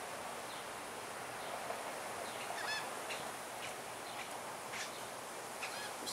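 Faint outdoor background with a few short distant bird calls, one near the middle and a couple near the end.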